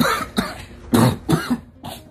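A man coughing hard and repeatedly, about five coughs in quick succession, as if choking on his own spit.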